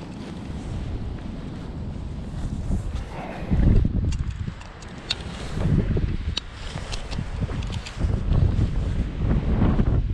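Wind buffeting the microphone in uneven gusts, a low rumble that swells and eases, with a few light clicks from handling.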